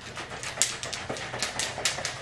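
Water and probiotic powder being shaken in a capped shaker bottle to mix the powder in: a rapid, rhythmic run of sloshing swishes, several a second.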